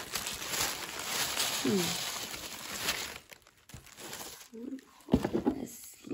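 Tissue paper rustling and crinkling as it is pulled out of a gift box, for about three seconds, then dying down to a few soft rustles.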